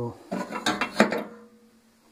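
Several sharp clinks and clatters in the first second or so as a 60-watt light bulb on its screw socket and leads is handled against the opened microwave's metal chassis.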